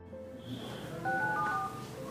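Mobile phone keypad tones as a number is dialled: a run of short electronic beeps starting about a second in, over soft background music.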